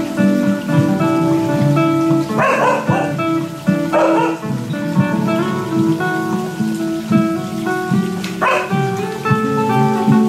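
Acoustic guitar picking a repeating arpeggio pattern, layered on a looper pedal. A dog barks about two and a half seconds in, again about a second and a half later, and once more near the end.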